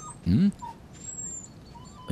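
A man's short voiced grunt, a questioning "mm?", rising in pitch and falling again.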